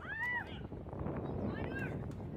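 High-pitched young voices calling out from the sidelines, a rising-and-falling shout just after the start and a shorter one near the end, over steady outdoor background noise.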